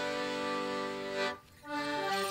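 Accordion holding one long chord, breaking off about a second and a half in, then starting a Morris dance tune.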